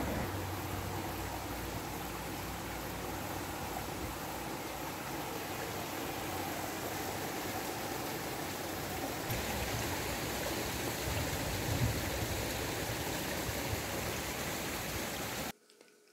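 Steady outdoor background noise, an even rushing hiss like wind or distant running water, with a low wavering rumble. Its tone shifts slightly about nine seconds in, and it cuts off suddenly just before the end.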